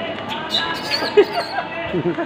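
Background voices and chatter, with one sharp thump a little past a second in.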